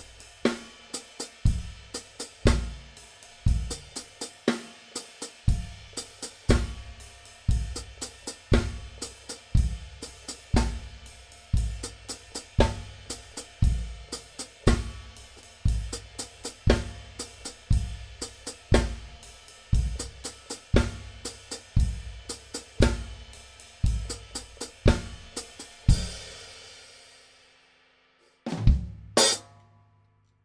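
A Gretsch drum kit with Zildjian cymbals is played in a steady groove, with the hi-hat worked by the left foot in an independence exercise. The playing is uneven in places; the drummer admits to a lot of mistakes. It stops a few seconds before the end, and the kit rings out.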